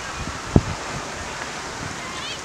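Wind on the microphone: a steady rush, with one dull low thump about half a second in.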